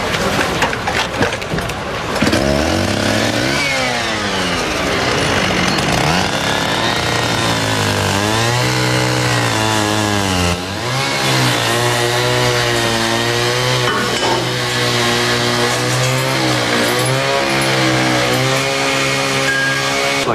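A motor-driven machine, like a power tool or engine, running steadily. Its pitch rises and falls slowly, with a brief drop about halfway through.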